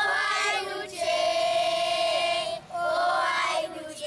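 A group of children singing together in unison, in long held notes, with short breaks between phrases.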